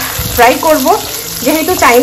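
Chopped onions and green peppers sizzling in oil in a frying pan as a spatula stirs them, with a voice over the top.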